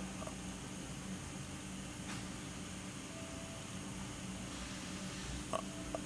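Steady low background hum with no speech, broken by faint clicks about two seconds in and near the end.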